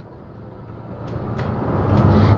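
A passing motor vehicle, its rumble growing steadily louder as it approaches.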